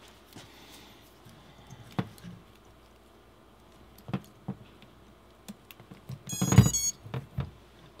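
Quiet handling clicks, then a few seconds in a LiPo battery plugged into a racing quadcopter with a clack, followed by a short run of electronic beeps: the motors playing the BLHeli_S ESCs' power-up tones, a sign that the ESCs have powered on.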